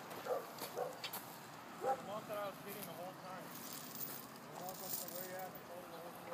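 Faint, distant voices of people talking, with a few soft clicks near the start.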